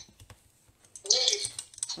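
Light clicks and taps of a phone being handled, with a short spoken sound about a second in.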